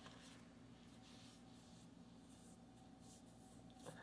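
Near silence: a steady low room hum with a few faint, soft rustles scattered through it.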